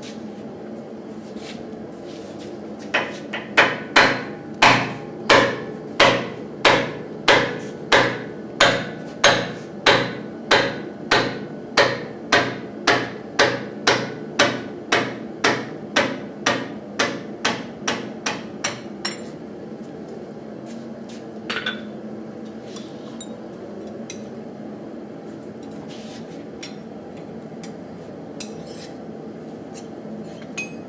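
Steady hammering on a hot die key being driven into a power hammer's die dovetail: about two blows a second for some fifteen seconds, growing lighter toward the end, then a couple of isolated knocks. A steady machine hum runs underneath.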